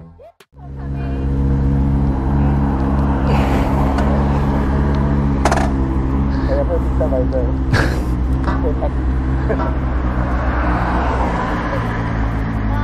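Sport motorcycle's inline-four engine idling steadily close to the microphone, with faint voices and a few sharp clicks over it.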